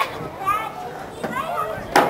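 Young players' and spectators' voices shouting and calling out during a lacrosse game, several short calls, with a loud sharp sound just before the end.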